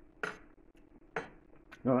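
Metal teaspoon clinking twice, about a second apart, followed by a lighter click.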